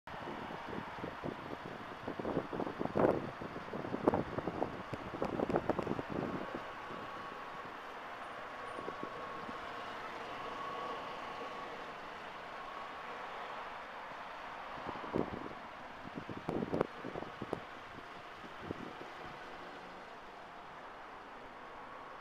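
Steady outdoor background noise, with two spells of louder irregular knocks and rustles, a couple of seconds in and again around fifteen seconds in.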